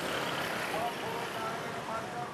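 Street traffic noise from motorcycles and other vehicles on a busy road, with faint voices in the background.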